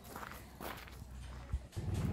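Faint footsteps on gravel, a few soft steps with a slightly sharper one near the end.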